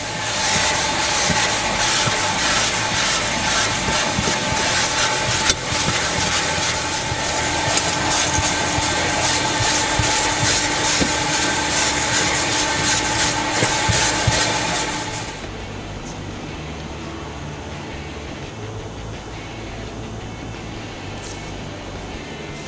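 Vacuum cleaner running as its hose cleans a car's seat and floor, a steady rushing noise with a constant whine. It stops about fifteen seconds in.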